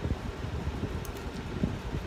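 Steady low rumbling background noise, like a room fan or air conditioner, with a few faint soft handling knocks.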